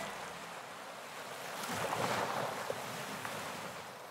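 Faint wash of sea waves used as an ambient sound effect in a rock track: a single swell of noise that builds to a peak about two seconds in and then ebbs away.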